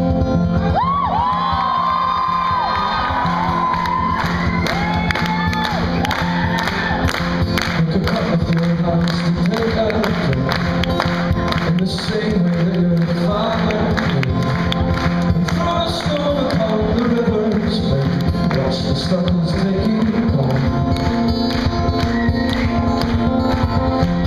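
A folk-rock band playing live with acoustic guitar, bass guitar and drums, the crowd whooping and cheering over the first few seconds.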